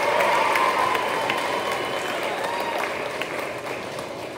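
Audience applauding, dense clapping with a few voices over it, slowly fading toward the end.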